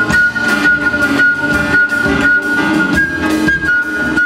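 Concert flute holding one long high note during an improvised jazz solo, stepping briefly up to a higher note about three seconds in and back down. Underneath, the big band's rhythm section plays, with drums and guitar.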